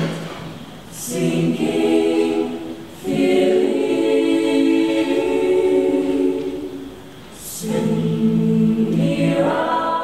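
Mixed-voice choir singing a cappella in held chords. The sound dips twice between phrases, each time with a short hiss as the singers sound an 's' together.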